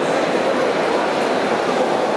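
A seawater ice-making machine running, with a steady mechanical noise.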